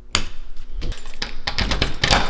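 A bunch of keys jangling in hand with scattered light metallic clinks, after a wall light switch clicks near the start.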